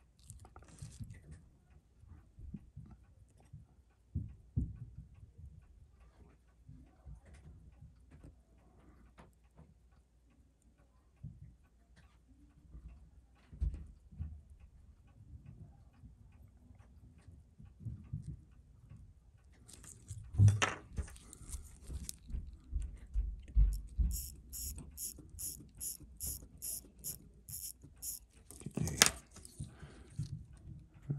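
Light metallic clicks and taps from tweezers working on an exposed Seiko 6138 automatic chronograph movement. Near the end comes a quick even run of sharp clicks, about three a second, and then one louder click.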